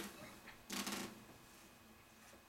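Faint rustling and brushing handling noise from an acoustic guitar being settled into playing position: two short brushes, one at the very start and another just under a second in.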